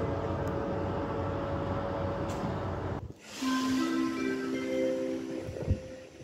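Steady low noise for about three seconds, which cuts off abruptly. Then the station public-address chime plays a rising sequence of four sustained notes, the signal that a new announcement is about to start.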